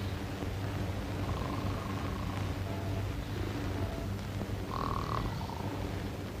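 Sleeping men snoring, a low rumbling drone that swells slightly.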